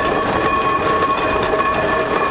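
Steam locomotive whistles sounding a steady chord of several notes, over the rumble and clank of steam locomotives rolling slowly past.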